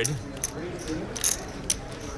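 Poker chips clicking together as a player handles his stack, a few sharp clicks over a faint murmur of the room.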